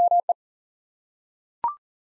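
Morse code at 40 words per minute, a single steady pitch sent as dah-dah-dit ("ME"), the repeat of the word just spoken. About a second and a half later comes a brief two-note courtesy beep that steps up in pitch, marking the end of the item.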